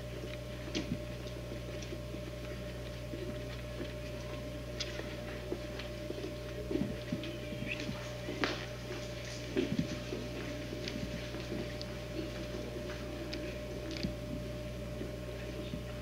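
Old camcorder tape audio: a steady low electrical hum and a constant mid-pitched tone under scattered faint clicks and rustles, the loudest clicks about eight and a half and nearly ten seconds in, typical of handling noise while the camera is carried with the lens covered.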